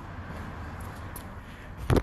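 Low handling and movement rustle as a phone camera is approached and grabbed, with a sharp knock near the end as it is picked up.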